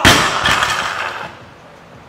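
A loaded barbell with bumper plates crashing down onto rubber gym flooring after a missed snatch attempt: a loud impact, a second knock about half a second later, and a metallic clatter that dies away within about a second and a half. A shout from the lifter comes with the drop.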